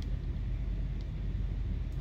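Steady low workshop background hum, with a single faint tick about a second in.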